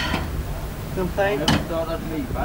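Voices speaking indistinctly over a low steady rumble, with one sharp knock about one and a half seconds in.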